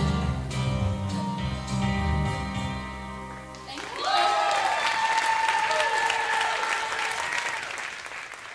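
A song's backing music ending on held chords, which stop about three and a half seconds in; then audience applause and cheering.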